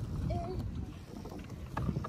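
Pedal boat being pedalled along: a steady low rumble of water and wind on the microphone, with a few faint clicks.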